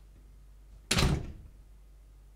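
A door slamming shut once, a single loud bang about a second in.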